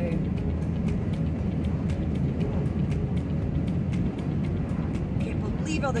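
Steady road and engine noise inside a truck's cab driving along a highway, a constant low rumble.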